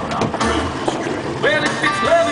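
Wind and water noise on an offshore fishing boat, with a low rumble. A singing voice comes back in from about one and a half seconds in.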